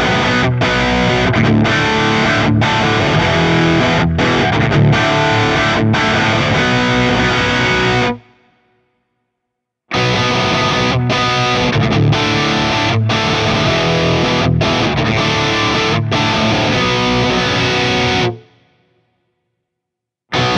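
Distorted electric guitar riff played through a Fractal Audio Axe-Fx II with OwnHammer 4x12 UltraRes cabinet impulse responses. For about eight seconds it goes through the impulse response modeled on a 1969 pre-Rola Celestion G12H speaker. After about a second and a half of silence the riff plays again through the one modeled on a Celestion Heritage G12H.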